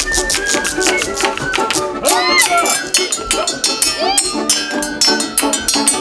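Russian folk ensemble playing a lively tune: wooden spoons clacking in a quick, even rhythm over balalaikas and wooden pipes.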